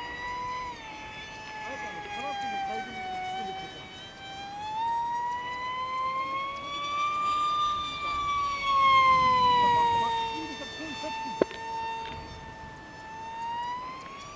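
Electric RC FunJet in flight, its 2600 kV brushless motor and 6.5×5.5 propeller on a 4-cell pack giving a high whine. The pitch sinks a little early on, climbs to its highest about eight seconds in, then falls back and holds steady.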